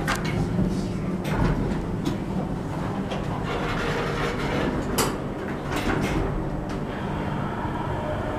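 U.S. Elevator hydraulic elevator's pump motor running with a steady low hum, heard from inside the car, with a few sharp clicks, the clearest about five seconds in.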